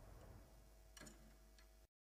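Near silence: a faint fading low hum and hiss with two faint clicks, about a second in and near the end, then the sound cuts off dead.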